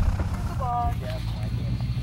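A light aircraft's propeller engine running steadily at a distance, taking up the slack in the tow rope before launch, with a brief distant voice just after half a second in and fainter voices after.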